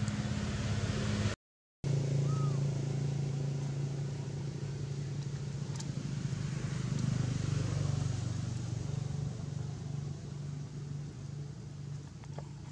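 Steady low hum of an engine idling. It drops out completely for a split second about a second and a half in.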